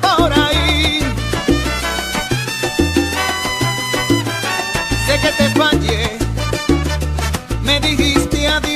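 Salsa baúl dance mix playing: a heavy, syncopated bass line under the song, with held instrumental notes in the middle and a wavering lead voice near the start and again around six seconds in.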